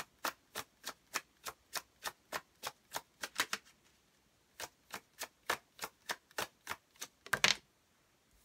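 Deck of tarot cards shuffled overhand: each small packet of cards dropped onto the deck gives a sharp click, about three a second. The clicks pause briefly about halfway, then resume, with a louder burst of card clatter near the end.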